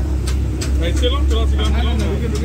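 Busy street-stall ambience: people talking in the background over a steady low motor hum, with scattered short clicks and clatter.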